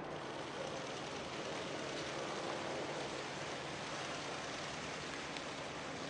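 Steady outdoor background noise, with a few faint clicks about two, three and five seconds in.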